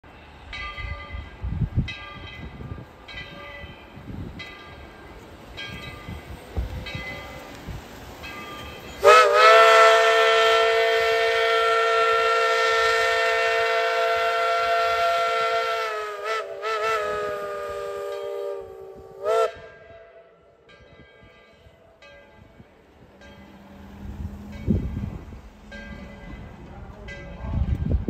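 ET&WNC No. 12, a 4-6-0 steam locomotive, blowing its chime whistle: one long blast of about seven seconds, then a few shorter ones, each chord sagging in pitch as it shuts off. Its bell rings about once a second before and after the whistle.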